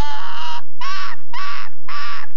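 A cartoon owl character laughing hard: a string of long, loud 'haw' syllables, about two a second.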